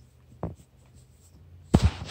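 A cat's fur brushing and rubbing against the phone's microphone, a loud scratchy rub near the end, with a soft knock about half a second in.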